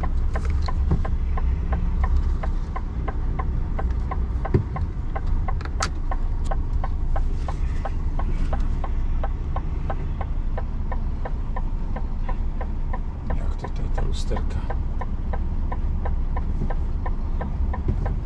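Inside a truck cab: the diesel engine running at low revs with a steady low rumble as the truck creeps forward, over a regular fast ticking of the indicator relay, about three clicks a second.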